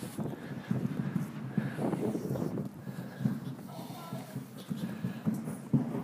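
Faint distant sounds of football training: players' voices and soft, irregular knocks and thuds.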